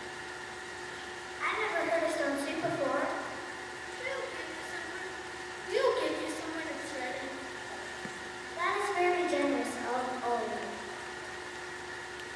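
Children's voices speaking lines on stage in short stretches with pauses between, over a steady hum.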